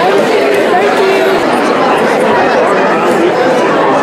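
Many people talking at once in a room: overlapping, indistinct conversation with no single voice standing out.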